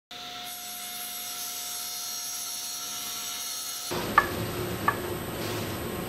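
Table saw running as it splits a melamine-faced particleboard panel in two: a steady high whine, turning into a fuller, lower noise about four seconds in, with two light knocks.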